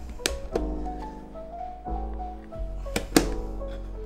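Background music with a steady melody, over which a metal spoon knocks against a container a few times while scooping sauce: two knocks right at the start and two about three seconds in, the last the loudest.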